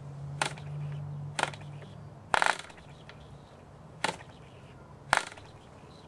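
Finger flicks of the propeller on a small vintage Cox glow engine: five sharp snaps about a second apart, the third the loudest, without the engine catching. A low steady hum fades out about two seconds in.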